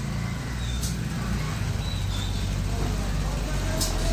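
Steady low mechanical hum with a faint hiss from air-driven equipment running: the pneumatic agitator turning in the paint tank.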